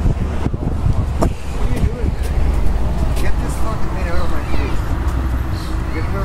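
A man's voice talking, the words not made out, over a steady low rumble of street traffic.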